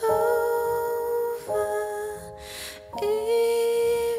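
Wordless humming of a slow melody in held notes, each about a second and a half long, with an audible breath before the third note.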